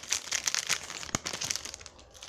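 Wrapper of a Panini Prizm football card pack crinkling as it is torn open by hand, with one sharp click a little over a second in. The crinkling thins out near the end.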